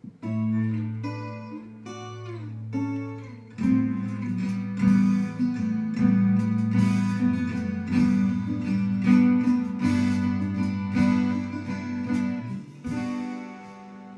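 Instrumental guitar introduction to a song. It opens with separate picked notes over sustained low tones and fills out into fuller, steady playing about three and a half seconds in.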